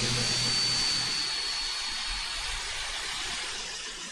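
Steady hiss of background noise with no speech, with a faint high whine in the first two seconds that fades away.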